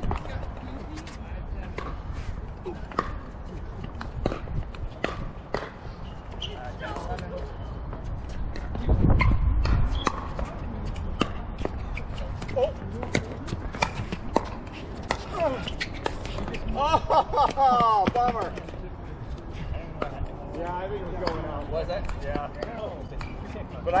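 Pickleball rally: repeated sharp pops of paddles striking the plastic ball, with players' voices breaking in about two-thirds of the way through. A brief low rumble about nine seconds in.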